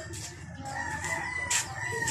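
A rooster crowing: one long, drawn-out call that starts a little under a second in and falls slightly in pitch.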